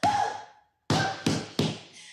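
A woman crying in four short, sharp sobbing bursts with dull thumps among them, the first as she drops heavily onto a leather sofa.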